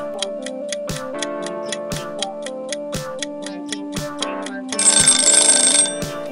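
Countdown timer sound effect: a clock ticking about four times a second over light background music. Near the end an alarm bell rings for about a second as the time runs out.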